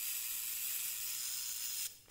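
A steady, even hiss, mostly high-pitched, with nothing else over it, cutting off abruptly near the end.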